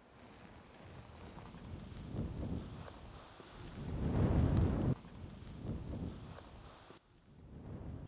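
Wind buffeting the microphone outdoors, a low rumbling rush that swells to its loudest about four seconds in, then drops off suddenly, with a smaller gust afterwards.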